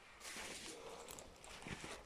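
Rustling handling noise with a few soft knocks near the end.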